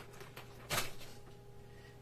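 A brief scuff of a hard-shell case being handled against a nylon backpack, just under a second in, over a faint steady electrical hum.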